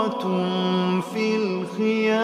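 Quranic recitation: one voice chanting in melodic tajwid style, holding long drawn-out vowels on steady notes that step down and back up, with short breaks about a second in and near the end.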